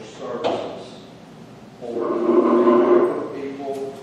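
People talking indistinctly in a meeting, with one louder, drawn-out voice for about a second near the middle.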